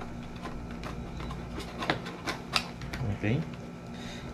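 A few sharp clicks and soft rustling, mostly in the middle, as a KYT motorcycle helmet's foam liner is tucked and pressed into its shell by hand.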